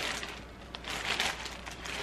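Clear plastic packaging bag crinkling as a bra is handled and pulled out of it, in uneven rustling bursts with a small click just under a second in.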